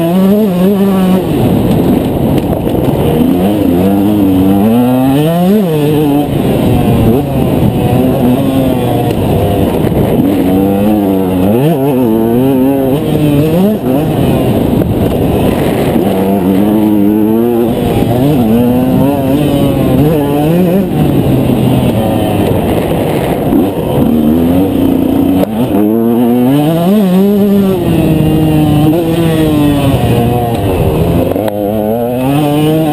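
KTM 125 EXC two-stroke single-cylinder enduro engine, heard from the rider's helmet, revving up and dropping back over and over as the rider accelerates and shuts off between corners and jumps on a tight dirt track.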